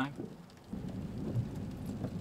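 Low, steady rumble of thunder setting in just under a second in, a thunderstorm ambience.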